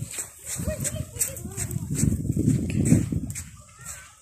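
Faint background voices over a low rumble, with short repeated crunches of footsteps on sand as the phone is carried along.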